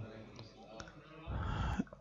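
A quiet pause picked up through a microphone, with a few faint clicks and a short, soft low noise about a second and a half in.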